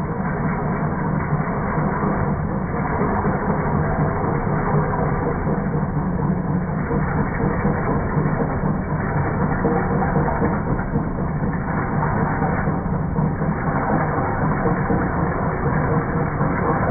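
A Jet JWL 1442 wood lathe running while a hand-held turning tool cuts a spinning yew blank, throwing off shavings; the cutting noise is steady and continuous.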